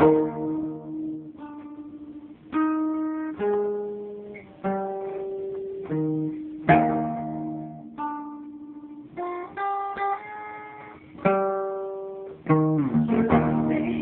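Solo acoustic guitar playing an instrumental passage: picked notes and chords each ring out and fade, a new one about every second, with louder struck chords at the start, about halfway and near the end.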